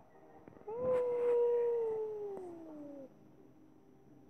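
A single long howl, about two and a half seconds, held level and then sliding down in pitch before it stops.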